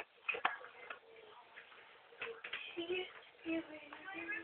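Staffordshire bull terrier sucking her tongue: a few sharp wet clicks and smacks, near the start and again about two seconds in, with a voice in the background.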